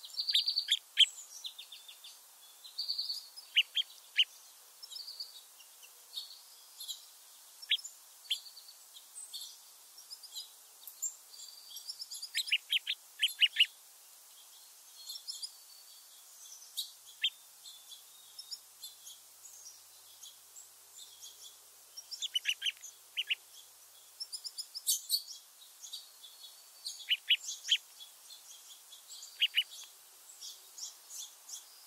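Small songbirds calling: short, sharp call notes, often in quick clusters of three to five, with fainter high, thin calls between them, over a steady hiss.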